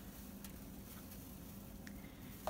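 Quiet room tone with a couple of faint, soft ticks.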